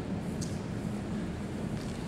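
Steady low background hum and rumble of room noise, with a faint tick about half a second in.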